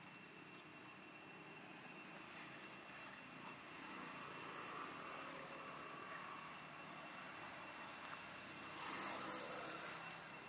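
Faint outdoor ambience: a low, even hum of distant engines, swelling briefly near the end, with two thin steady high-pitched tones running through it.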